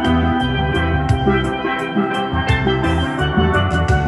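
Steel pan band playing an instrumental tune: bright, ringing pan notes over low bass notes, with a steady rhythm of sharp strikes.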